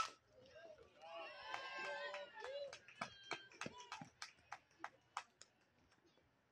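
Softball bat striking the pitched ball with a single sharp crack, followed by voices shouting and cheering. Then about a dozen sharp claps come over the next two and a half seconds and stop near the end.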